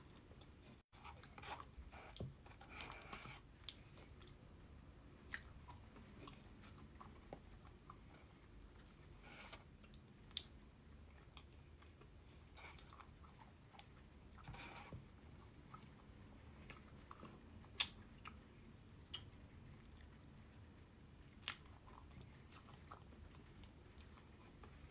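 Faint close-miked eating of mint chocolate chip ice cream: chewing and mouth sounds, with scattered sharp clicks and light scrapes as a metal fork digs into the tub.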